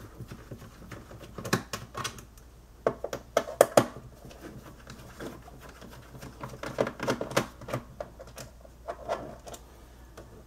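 Irregular clicks and taps of a screwdriver and small screws against a laptop's plastic bottom case as the case screws are undone, coming in short clusters.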